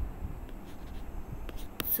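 Pen stylus tapping on a drawing tablet: a few sharp clicks near the end, as a pen is picked from the app's menu, over a faint low hum.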